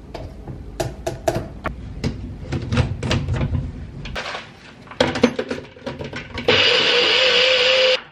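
Clicks and knocks of a scoop and a blender cup being handled and fitted, then about six and a half seconds in a NutriBullet personal blender's motor runs for about a second and a half and cuts off suddenly. It is really loud, with a piercing whine that the owner thinks means the unit is broken.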